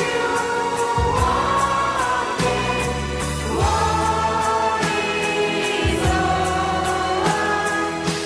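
A mixed group of men and women singing a Christmas song together in long held notes, over a band backing with a bass line and a steady beat.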